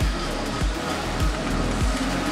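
Background electronic music with a steady beat, a low kick drum about every 0.6 seconds.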